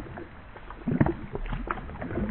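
Pond water splashing and sloshing as a dog swims and paddles, with a run of sharper splashes about a second in.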